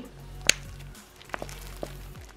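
Soft background music, with one sharp click about half a second in and two fainter clicks later from the plastic dye tube being squeezed over a plastic mixing tray.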